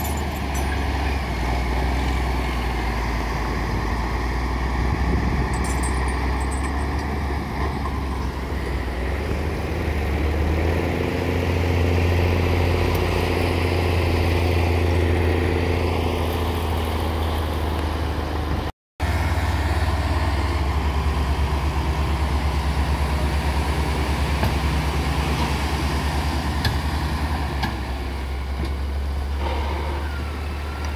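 Diesel engines of heavy four-wheel-drive tractors running steadily under load as they move a fishing boat over the beach sand. Around the middle the engine note rises and climbs, then settles. The sound cuts out for an instant about two-thirds of the way through.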